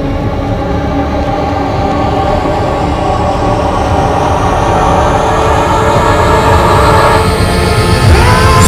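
A film score tension cue with no speech: a dense, sustained drone of many held tones over a low rumble, swelling gradually louder. A thin high tone glides steadily upward throughout, building toward a climax.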